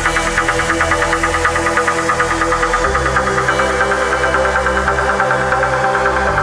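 Tech trance music: a fast, evenly pulsing synth line over held tones, with a deep bass coming in about halfway through.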